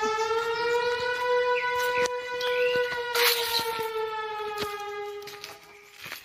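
A long siren-like held tone, its pitch rising a little and then sinking, fading out near the end. A few short knocks and a brief rustle about three seconds in sound over it.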